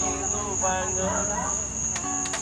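A steady, high-pitched chorus of night insects, typical of crickets, with people talking in the background.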